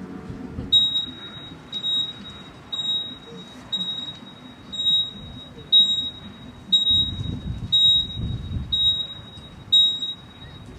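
Hospital heart-monitor beep sound effect: a single high-pitched electronic beep repeating about once a second, ten times.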